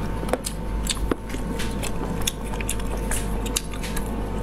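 Close-miked mouth sounds of someone eating spicy stewed snails: irregular wet clicks and smacks of chewing and sucking, over a steady low hum.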